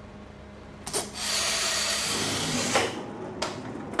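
A small lab trolley rolls along a track, making a steady rumbling hiss. There is a sharp knock about a second in and another near the end of the roll.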